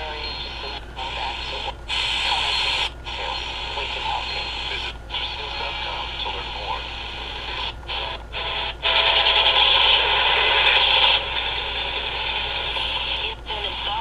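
C. Crane CC Pocket radio's built-in speaker playing a weak AM station, a voice in heavy static and interference, with a steady low hum under it. The sound cuts out briefly several times as the radio is stepped through the band in one-kilohertz steps.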